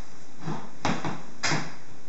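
Quicksmart Backpack compact travel stroller's wheels being folded in: three short clunks, the last two loudest.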